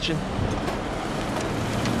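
Road traffic on a wet street: a steady hiss of tyres on wet pavement, with a car engine running low underneath.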